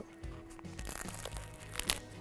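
Quiet background music, with a crisp crunch about two seconds in as teeth bite through the crusty crust of a Roman pizza bianca.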